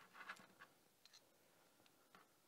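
Near silence, with a few faint clicks and scrapes of small metal parts being handled in the first half-second.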